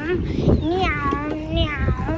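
A high-pitched puppet-character voice giving several wavering, drawn-out cries, over a low rumble of wind and handling noise.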